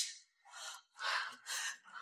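A woman gasping and panting, about four short breaths in quick succession.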